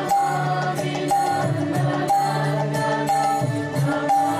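Devotional chanting of a mantra by low voices with music, the sung phrase repeating about once a second.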